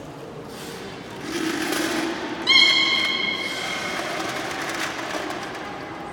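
A short, steady, high whistle about two and a half seconds in, the loudest sound, with a murmur of poolside noise around it.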